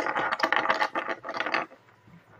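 Small plastic Lego pieces handled and pushed about on a wooden tabletop: a quick, dense run of clicks and clatters that stops suddenly near the end.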